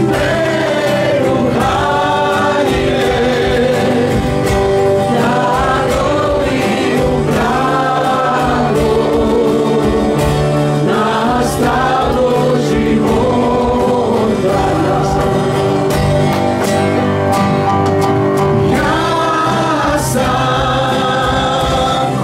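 Live worship band: several men's and women's voices singing a praise song together, accompanied by acoustic guitars and a keyboard, continuously.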